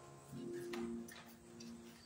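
Quiet pause: a faint, steady low tone on two pitches, with a few soft ticks.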